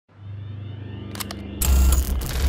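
Sound design for an animated logo intro: a low drone with a faint rising tone, a few quick clicks, then a loud bass-heavy hit about a second and a half in.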